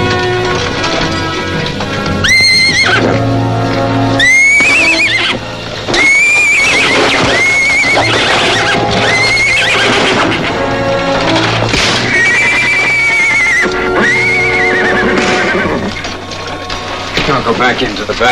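Horses whinnying repeatedly, high wavering neighs one after another, over an orchestral film score.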